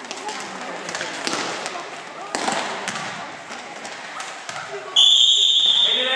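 Ball thuds and voices echoing in a sports hall, then about five seconds in a loud, steady referee's whistle blast lasting about a second.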